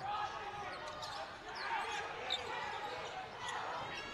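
Basketball arena ambience: a basketball being dribbled on the hardwood court over the low murmur of the crowd, with a couple of brief high squeaks.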